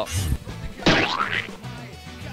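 A cartoon-style comic sound effect with a quick sweeping pitch about a second in, laid over background music with a steady low beat, marking the pie-in-the-face punishment.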